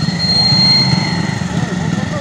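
Motorcycle engines idling close by: a steady low rumble with a thin high whine above it, and faint voices in the background.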